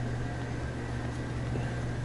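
Steady hum of store refrigeration, the chest freezers and a refrigerated meat display case, with a low mains-type drone and faint steady tones above it.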